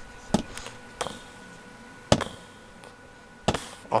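A handful of sharp, hard knocks and taps spread over a few seconds, the loudest about two seconds in, from a large plastic action figure being handled and bumped about.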